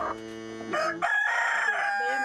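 A rooster crowing: one long drawn-out call that swells in loudness under a second in and is held to the end.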